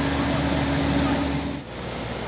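Fire engine running steadily at a fire scene, a constant engine hum with a steady tone over a wash of noise; near the end it gives way to a quieter hiss.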